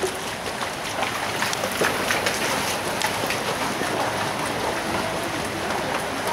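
Steady hiss of rain falling on deep floodwater, with fine scattered patter throughout.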